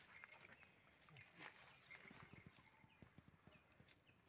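Near silence, with faint scattered clicks and rustles that come more often in the second half.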